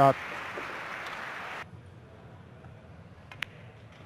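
Audience applause that cuts off abruptly about a second and a half in, then a single sharp click of a cue tip striking a pool ball near the end.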